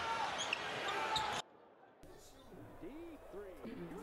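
Televised NBA basketball game: court and crowd noise under play-by-play commentary, cut off abruptly about a second and a half in. After a brief near-silence, a quiet low voice.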